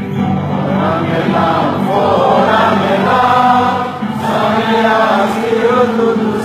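Many voices singing a chant-like song together over steady musical accompaniment, with a short break between phrases about four seconds in.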